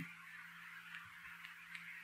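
Very faint room tone between phrases of speech: a low steady hum and a soft hiss, with a few tiny clicks.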